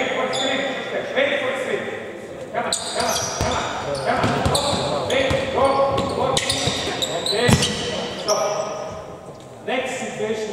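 A basketball bouncing on a hardwood court a few times during live play, with voices calling out through most of it, echoing in a large sports hall.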